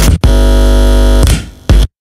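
The end of an electronic bass-music track: the beat cuts out, a held synth chord over deep sub-bass sounds for about a second and fades, then one last short hit and the track stops dead.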